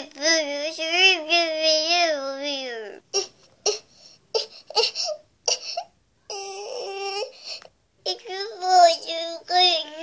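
Baby-like crying and babbling in a high voice. A long wavering wail slides down in pitch about three seconds in, then come short broken sounds and more wavering cries near the end.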